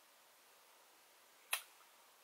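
Near silence, broken by a single short, sharp click about one and a half seconds in.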